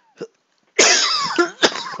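A man coughing loudly, a harsh cough starting about a second in, with a sharp second cough just after.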